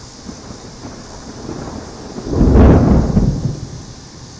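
A clap of thunder rolls in. It builds about a second and a half in, peaks loud with a deep rumble just past the middle, and fades away before the end, over a steady hiss.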